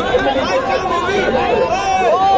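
Many voices talking and calling over one another: players and spectators chattering around a volleyball court, with no single voice standing out.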